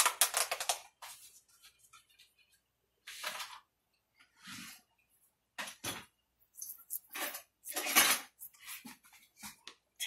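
A spoon scraping and knocking inside a plastic tub of garlic butter as it is opened and scooped from: a series of short, irregular scrapes and clicks with quiet gaps between.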